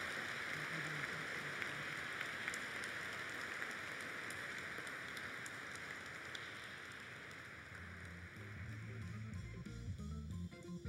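Audience applauding steadily, slowly dying away. Music comes in near the end.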